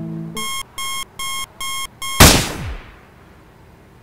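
Background music stops just in, then an electronic alarm clock beeps five times in short, evenly spaced pulses, about two and a half a second. A single loud gunshot cuts the beeping off about two seconds in and rings out for about half a second.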